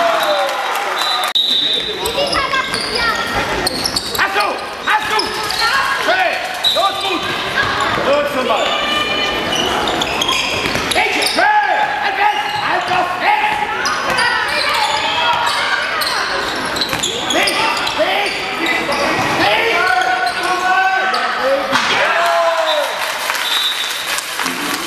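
Handball game in a sports hall: the ball bouncing on the court floor amid children's shouts and calls, all echoing in the large hall.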